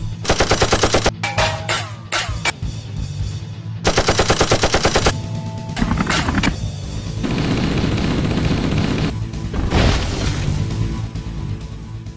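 Two bursts of rapid automatic gunfire, each about a second long at roughly ten shots a second, over background music. A longer rushing noise and another loud hit follow in the second half.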